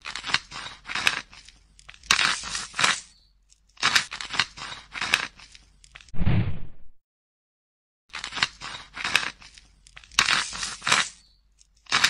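Dubbed ASMR scraping-and-crunching sound effect for a knife blade scraped across a crusty surface: runs of crisp, gritty strokes, several a second. A shorter, duller and deeper crunch comes about six seconds in, then about a second of silence before the strokes start again.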